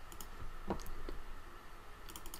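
A few computer mouse clicks.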